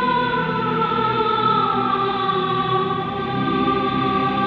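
Background music: a choir singing long, held notes.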